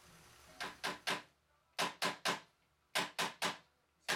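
Handheld chiropractic adjusting instrument firing sharp clicks in bursts of three, about four clicks a second, with three bursts a little over a second apart.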